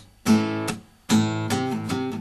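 Acoustic guitar strummed: two chords a little under a second apart, each left to ring.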